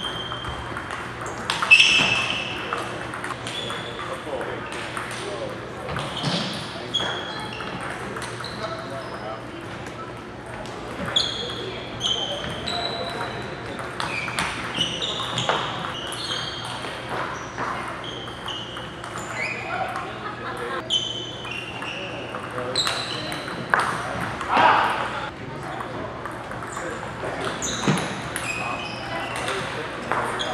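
Celluloid table tennis balls repeatedly clicking off paddles and the tabletop during fast rallies, many short sharp knocks with brief high pings, amid the echo of a large hall.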